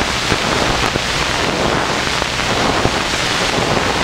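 Steady, loud rushing hiss with a faint low hum underneath: the noise of an old film soundtrack in a gap in the narration.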